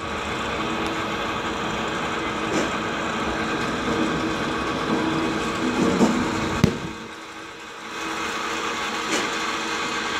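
Steady motor hum of a batting-cage pitching machine, with one sharp crack about six and a half seconds in and a brief drop in level about a second later.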